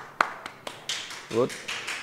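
A man clapping his hands: two sharp claps at the start, then a run of lighter, quicker claps, with one short spoken word about a second and a half in.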